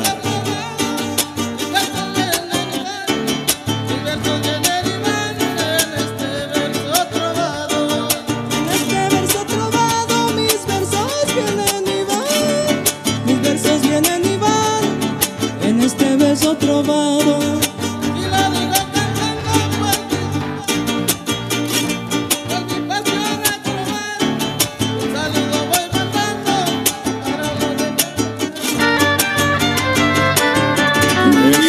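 A trío huasteco playing a huapango live: a violin carries the melody with sliding notes over the steady strummed rhythm of a jarana huasteca and a huapanguera.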